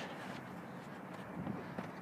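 Faint steady background noise with a few soft taps in the second half.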